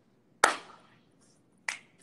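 Two sharp hand strikes from a two-person handshake routine: a loud palm slap about half a second in, then a shorter, crisp crack near the end.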